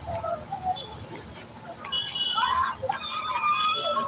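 People's voices out in the street, with loud, high drawn-out calls or cries in the second half.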